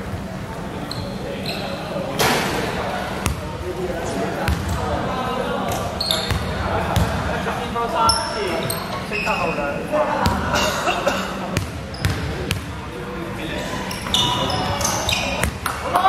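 Basketball game on a wooden court in a large echoing sports hall: a ball bouncing, sneakers squeaking in short high chirps, and players' voices calling out.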